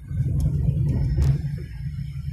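Road noise inside a moving car on a motorway: a low rumble of tyres and engine that swells about a quarter second in and eases near the end. Two sharp clicks fall in the middle.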